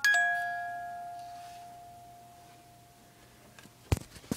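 A single bell-like chime note from a musical Christmas snowman figurine rings out and fades slowly over about three and a half seconds. A sharp knock comes just before the end.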